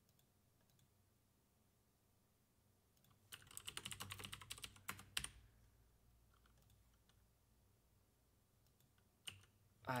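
Typing on a computer keyboard: a rapid run of keystrokes lasting about two seconds in the middle, then a couple more keys near the end.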